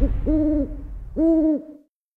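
Two short hoots about a second apart, each a steady low tone with rounded ends, over the fading tail of a low rumble.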